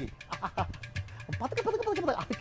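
A man's voice in short, broken utterances, with gaps between them.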